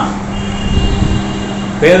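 A steady background hum with a faint, held high tone in a pause between a man's words; speech resumes near the end.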